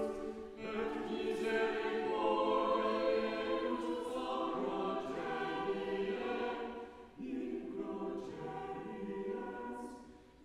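Church choir singing. The sound dips briefly between phrases, once near the start and again about seven seconds in.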